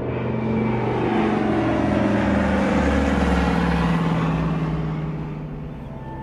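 Trailer sound-design swell: a rushing noise over a deep rumble that builds for about three seconds while a tone slides steadily downward in pitch, then eases off near the end.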